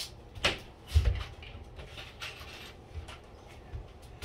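Light knocks and clicks of tools and small parts being handled: a knock about half a second in, a dull thump about a second in, then a few fainter ticks.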